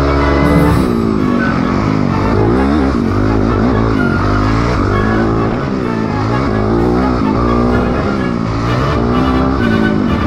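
Dirt bike engines revving up and down again and again, from about a second in, over background music.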